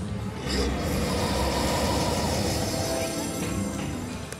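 Video slot machine playing its electronic game music and reel sounds as the reels spin and land on cash-value symbols.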